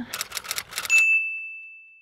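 A quick run of about six sharp clicks, then a single bright bell ding that rings on and fades away over about a second: an edited-in bell sound effect.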